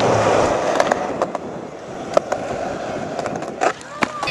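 Skateboard wheels rolling on asphalt, loud for about the first second and then fainter, with several sharp clacks along the way and the strongest one near the end.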